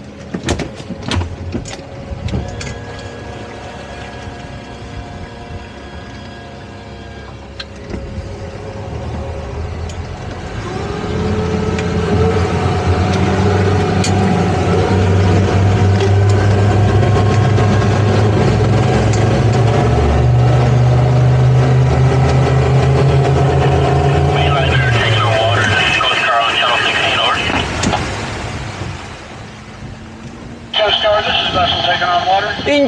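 Twin Suzuki outboard engines on a towboat running low for the first several seconds, then throttled up about ten seconds in to a loud, steady run under load as they pull on a taut tow line to free a grounded boat, easing back a few seconds before the end.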